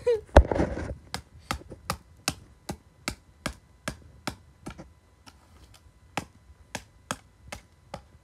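Repeated strikes of a knife blade on a DVD lying on carpet, about two to three a second, chopping the disc to pieces. One longer, louder crunching strike comes about half a second in, and the strikes pause briefly about five seconds in.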